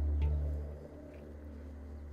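Didgeridoo playing a low, steady drone that swells briefly and then sinks as the music closes, with the last handpan notes ringing away faintly above it.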